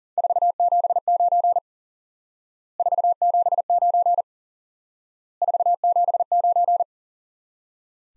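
Morse code sent at 40 wpm as a steady tone of about 700 Hz, keying the number 479 (....- --... ----.) three times, in three bursts about a second apart.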